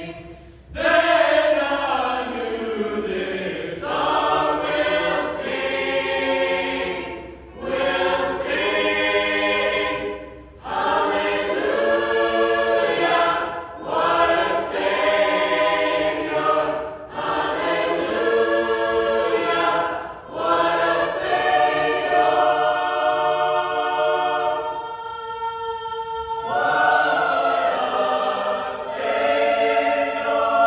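Mixed choir singing sacred music in phrases of a few seconds, with short breaks for breath between them. In the second half it holds long sustained chords, breaks briefly, then starts a new phrase.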